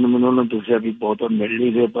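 A man speaking Punjabi over what sounds like a telephone line, thin and narrow, with the high end cut off.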